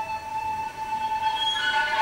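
Cello holding one long high bowed note, with higher tones joining about a second and a half in.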